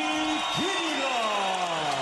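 A voice drawn out in long tones: one steady held note, then a quick rise and a long, slowly falling glide.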